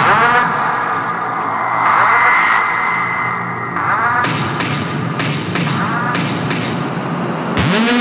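Melodic house/techno in a breakdown without the kick drum: sustained synth pads with a held high tone and sweeping synth swells. Near the end a rising sweep leads back into the beat.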